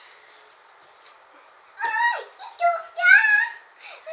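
A young girl's high-pitched voice in several short calls that rise and fall in pitch, starting about halfway through after a quiet moment: voicing her dolls in play.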